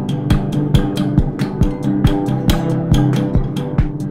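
Classical guitar played through a contact mic and a slinky toy acting as a spring reverb, its notes ringing on, over a steady beat of low thumps and clicks about two and a half times a second.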